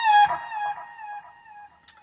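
Keipro electric guitar playing a single lead note on the high E string, bent a full step up at the 17th fret and held. About a quarter second in, the pitch drops back down and the note fades out over the next second and a half, with a faint click near the end.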